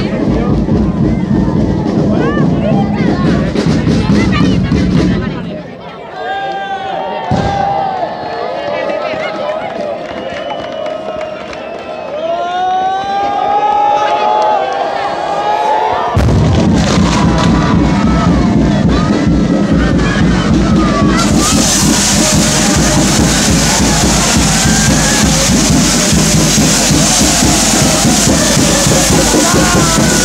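Fireworks with a crowd: loud, dense crackling at first, then a quieter stretch of crowd shouting and whistling. About sixteen seconds in, a loud, continuous crackle of fireworks sets in suddenly, and a few seconds later a bright hiss of spark sprays joins it. Music plays underneath.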